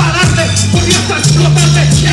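Live hip hop music played loud through a stage PA: a heavy, sustained bass line and a kick-drum beat, with rapped vocals over it.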